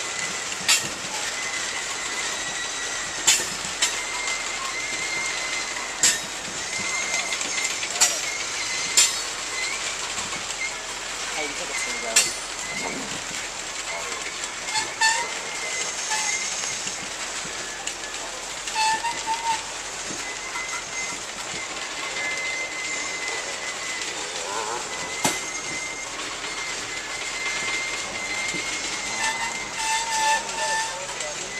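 Loaded coal hopper cars rolling past on the track, a steady rumble broken by sharp clicks every few seconds, with a thin high squeal that comes and goes.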